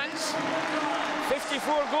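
A man speaking: football match commentary.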